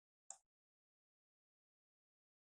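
Near silence, broken by one brief, faint click about a third of a second in.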